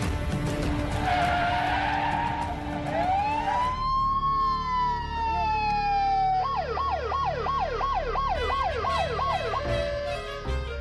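Emergency vehicle siren, starting about three seconds in with a long wail that rises and slowly falls, then switching to a fast yelp of about three sweeps a second.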